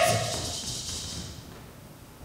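The end of a loud call from an actor's voice at the very start, ringing out in the hall and dying away over about a second and a half, then quiet hall tone.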